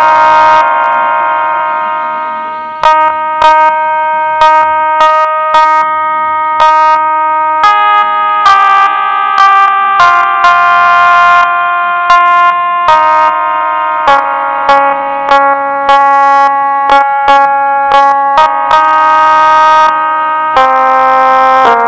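Casio SA-11 mini keyboard playing a melody note by note. Each note is held at an even level rather than dying away like a piano. One long note near the start fades out over about two seconds before the tune resumes.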